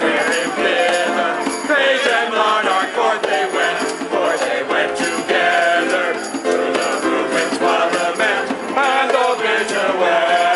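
A group of carolers singing together, accompanied by an electric keyboard and a djembe hand drum keeping a steady beat.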